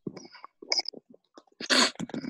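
A person sneezes once, sharply, about a second and a half in, after a few brief scattered noises.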